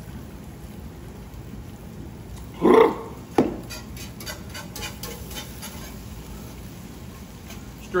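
Wire whisk stirring a thick cream sauce in a large pan, its wires ticking lightly against the pan several times a second in the second half. About three seconds in, a man gives a short loud vocal exclamation, followed by a sharp knock.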